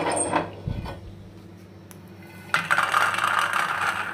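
Roasted peanuts sliding off a griddle into a steel plate: a dense rattling patter that starts about two and a half seconds in and lasts about a second and a half.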